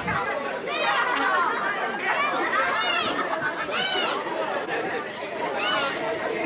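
Many voices chattering at once, high-pitched children's voices among them.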